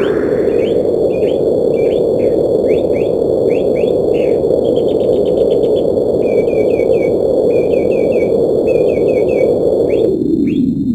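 Cartoon sound effect: a loud, steady rushing noise overlaid by a string of short, high chirps, with a quick rattling run of chirps about five seconds in. It accompanies the caged bird character turning fuzzy and glowing.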